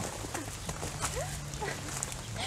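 Footsteps on a stony dirt path, over a low steady hum.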